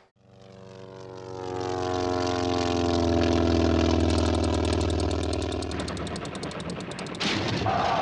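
A propeller aircraft engine on a film soundtrack flies past: it swells up out of silence, its pitch sliding slowly down as it passes, then fades. A fast, even rattle runs through the second half. Near the end a noisy burst cuts in, followed by a held tone.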